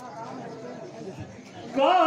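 Low, indistinct chatter of voices. Near the end a man's voice cuts in much louder, sliding up into a long held sung note.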